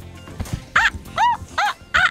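Background music with short, high-pitched animal-like calls repeating about twice a second, each call rising and falling in pitch.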